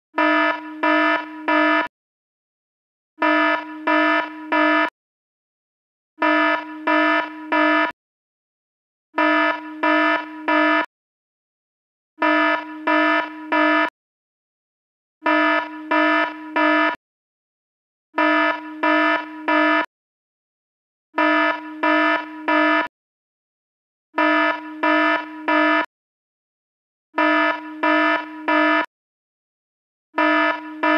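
A low, buzzy electronic alarm tone beeping in groups of three. Each group lasts about two seconds and is followed by about a second of silence, so the pattern repeats ten times at a steady three-second rhythm.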